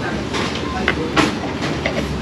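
Knife and fork clinking and scraping on a plate while cutting a breaded cutlet, a few sharp clinks with the loudest about a second in, over steady restaurant background noise with voices.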